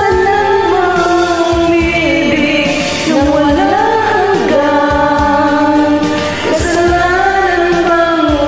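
Two women singing a Tagalog love ballad as a karaoke duet over a recorded backing track, holding long notes, with a run that sweeps up and back down about halfway through.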